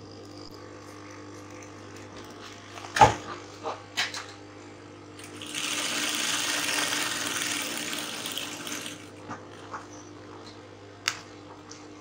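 Satin and interfacing fabric pieces rustling as they are handled on a table, loudest for about three and a half seconds midway, with a sharp tap about three seconds in and a steady low hum underneath.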